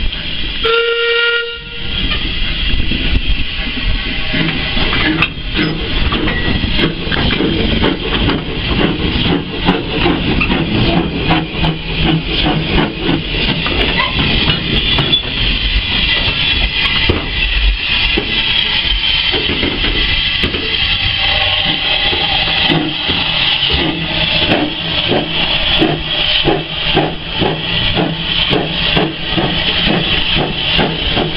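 A short whistle blast about a second in from a small Andrew Barclay 0-4-0 saddle-tank steam locomotive. It then works slowly past with quick, closely spaced exhaust beats over a steady hiss of steam.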